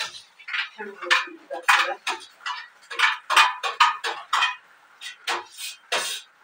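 Kitchenware being handled at a counter: dishes and cutlery clinking and knocking in quick, irregular strikes.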